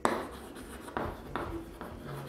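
Chalk writing on a blackboard: a series of short, scratchy strokes and taps as the chalk is drawn across the board, the first the sharpest and several more quick strokes from about a second in.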